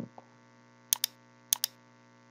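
Two quick double clicks at a computer, about half a second apart, over a faint steady electrical hum.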